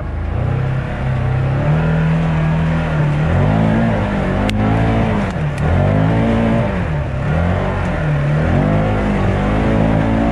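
Can-Am Maverick Trail 1000's V-twin engine revving up and dropping back in repeated surges as the side-by-side drives through mud, with a sharp knock about four and a half seconds in.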